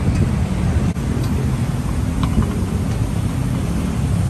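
Steady low outdoor rumble of wind on the microphone mixed with road traffic, with a couple of faint light clicks about a second and two seconds in.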